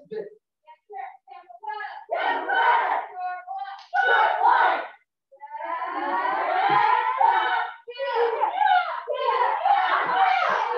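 Children's shouts ('yeah!') with their strikes in a martial arts drill, several short shouts and one long drawn-out group shout from about five to eight seconds in.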